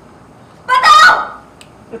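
A person's loud, short laugh about two-thirds of a second in, lasting just over half a second.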